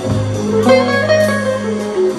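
Live band playing an instrumental passage: guitar notes over sustained electric bass notes, with drum kit and cymbal strokes.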